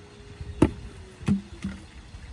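Three sharp, hollow knocks of empty plastic gallon jugs being bumped, the last two with a short low ring, over a faint steady hum.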